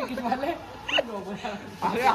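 Men's voices in casual banter, with a short, sharp exclamation about a second in.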